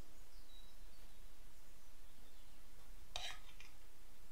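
Quiet room with a steady low hum; about three seconds in, one brief scrape or tap of a spatula against a glass bowl as chickpeas are scraped off into it.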